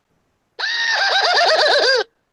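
A short recorded sound effect played as a segment stinger: a high, rapidly wavering cry that starts about half a second in, falls in pitch and cuts off abruptly.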